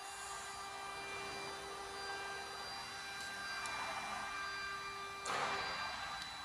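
Steady machine whir with a constant whining hum, and a short noisy swish about five seconds in, after which the lowest hum tone stops.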